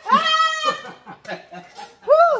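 A high-pitched, drawn-out vocal squeal from a person, held for well over half a second, followed by short, choppy laughter.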